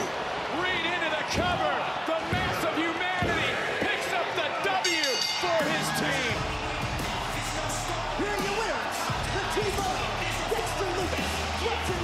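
Wrestling pinfall: excited voices and a few sharp slaps about a second apart, like a referee's count on the mat, then the ring bell about five seconds in. Entrance music with a steady low beat starts about a second later.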